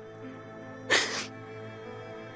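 Soft background music of held notes, with one sharp sniff from a crying woman about a second in.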